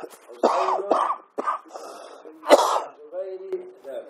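A man coughing and clearing his throat in several short bursts, the loudest about two and a half seconds in, with a few muttered sounds between them.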